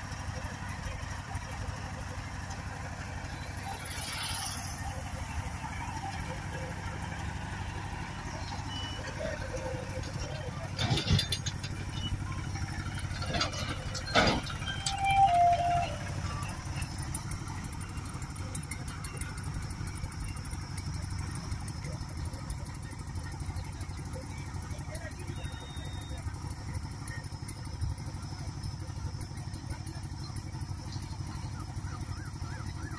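A vehicle engine running steadily with a low hum, with a few sharp knocks about eleven and fourteen seconds in.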